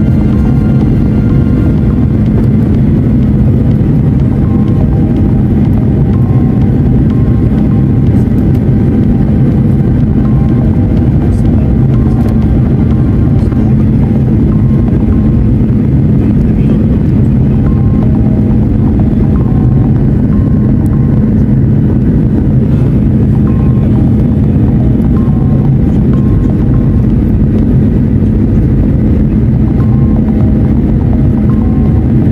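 Steady cabin noise of a Boeing 737 airliner heard from a window seat over the wing during its approach descent: a loud, even rumble of the turbofan engines and airflow. Faint music plays over it.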